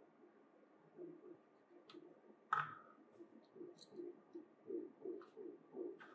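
Quiet handling of a steel ruler fitted with a black binder clip: a few light clicks and one sharp metallic click with a brief ring about two and a half seconds in, with soft, evenly spaced low pulses in the second half.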